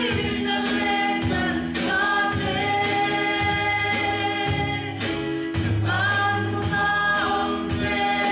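Two women singing a slow hymn into microphones, holding long notes over a steady low accompaniment.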